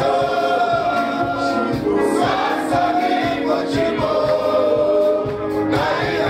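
Congregation singing a gospel worship song together, with long held notes.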